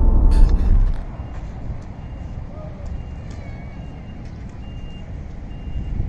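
For about the first second, loud low road and engine noise inside a moving Renault Trafic van's cabin. It cuts to a vehicle's reversing alarm beeping, a short high beep about every 0.7 s, over a low outdoor traffic hum.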